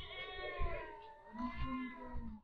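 One long, drawn-out wailing, meow-like call that dips in pitch about halfway through and rises again.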